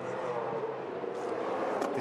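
Ford Falcon FG X Supercar's V8 engine running through a corner, a steady engine note.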